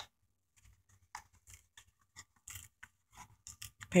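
Glued seam of a paperboard candy box being pried and peeled apart by hand: a sharp click, then faint, scattered crackles and small tearing sounds that come more often toward the end.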